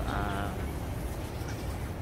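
A woman's short, quavering vocal sound, about half a second long at the start, then a steady low rumble on the phone's microphone.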